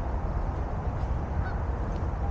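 Wind buffeting the camera's microphone, a steady uneven low rumble, with a faint short high call about one and a half seconds in.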